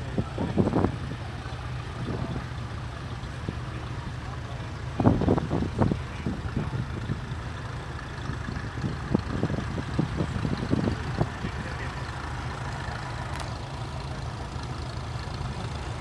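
Vintage grey Ferguson tractor engines running, a steady low drone under short bursts of nearby voices.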